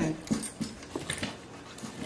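Pet dog making a few soft, short sounds, much quieter than the talk around them.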